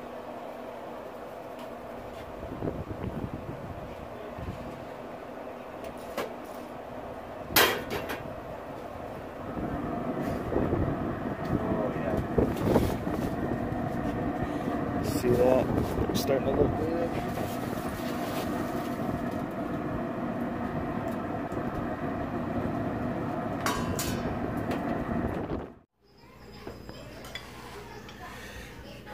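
Traeger pellet grill running with a steady hum, with a sharp clack about seven or eight seconds in; from about ten seconds in the sound grows louder with the grill lid open. It stops abruptly near the end, giving way to quieter room sound.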